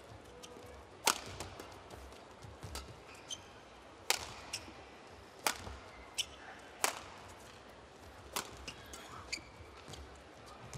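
Badminton rally: rackets strike the shuttlecock in sharp cracks roughly every one and a half seconds, with lighter clicks and brief high squeaks between the hits.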